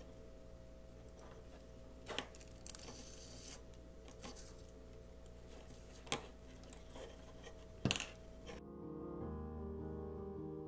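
Faint handling noise as jute twine is stitched and wrapped around bundled grapevine strands with a blunt needle: light rustles and a few sharp clicks over a low steady hum. Piano background music comes in near the end.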